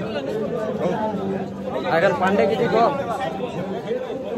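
Men talking and chatting, several voices overlapping, over a steady low hum.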